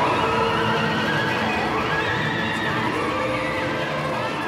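Experimental ensemble music on effects-processed electric guitars: several sustained tones slide up and down in pitch and waver over a dense, noisy bed, slowly getting quieter.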